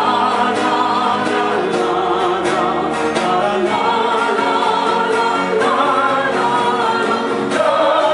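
A live acoustic metal band: a woman and a man singing held, full-voiced lines together over acoustic guitar. A louder phrase starts near the end.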